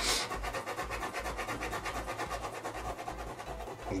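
Black ballpoint pen scratching across paper in a quick, even run of short cross-hatching strokes, one after another.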